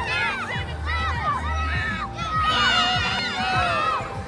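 Many children's high voices shouting and cheering at once, with overlapping calls throughout, over background music.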